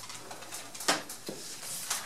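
Paper documents being handled and leafed through, giving a few short, sharp rustles and flicks, the loudest about a second in.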